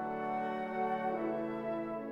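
Symphony orchestra playing a slow, singing movement: sustained chords held over a steady low note, with the upper voices shifting slowly.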